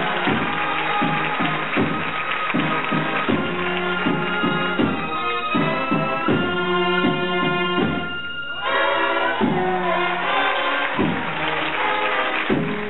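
Cornet-and-drum band (Spanish banda de cornetas y tambores) playing a processional march live: bugle-like cornets hold chords over steady drum beats. The sound thins briefly about eight seconds in, then the full band comes back.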